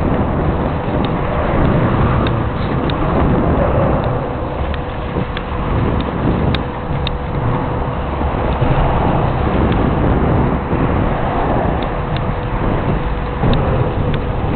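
Bicycle rolling along a paved path, with wind on the microphone: a steady low rumble, scattered small clicks and rattles, and a faint steady hum at one pitch.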